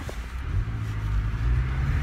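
MK7 Volkswagen Golf GTI's turbocharged four-cylinder engine running under throttle, heard from inside the cabin with the induction sound of an aftermarket 034 Motorsport intake. The low engine note comes in about half a second in and grows slightly louder.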